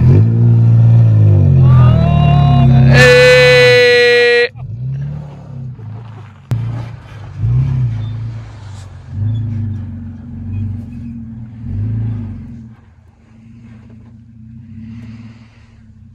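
Toyota Tacoma pickup's engine revving hard while climbing a dirt mound, the pitch rising and then held high until it cuts off abruptly about four seconds in. After that the engine is fainter, rising and falling in pitch several times, and it dies down near the end.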